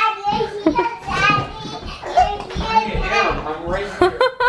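A young girl's high-pitched voice, calling out and chattering excitedly without clear words.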